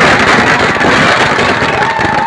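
A long string of firecrackers going off in a loud, rapid, unbroken crackle.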